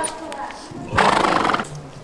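A horse neighing once, a short call about a second in.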